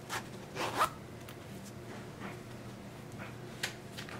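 The zipper of a small handmade fabric pouch being pulled open: two short zips within the first second, then faint handling of the fabric.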